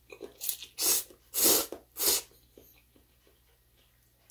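A person slurping instant yakisoba noodles in four quick noisy draws, the third longest and loudest, then chewing quietly.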